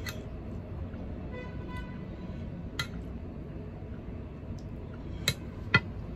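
A metal fork clinking against ceramic plates in a few sharp, separate clinks, the two loudest close together near the end, over a steady low background hum. A faint brief tone sounds about a second and a half in.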